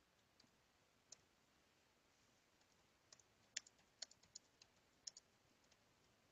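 Near silence, broken by a dozen or so faint, sharp clicks of computer keys being pressed, most of them between about three and five seconds in.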